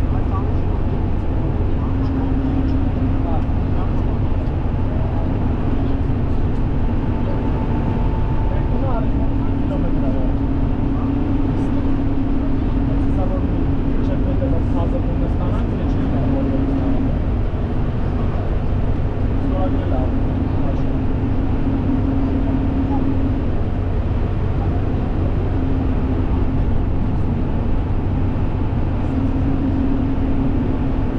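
Steady road and engine noise of a car driving at a constant speed, heard from inside the cabin, with a low hum that comes and goes.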